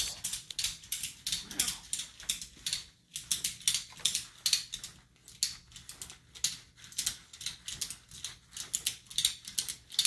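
A ratchet tie-down strap being cranked tight: a long run of quick mechanical ratchet clicks, a few a second, broken by brief pauses about three and five seconds in.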